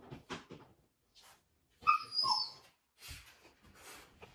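Blue heeler puppy playing with a rubber pig toy: soft mouthing and shuffling at first, then about two seconds in one short, loud, high squeal that drops a little in pitch, and quiet shuffling near the end.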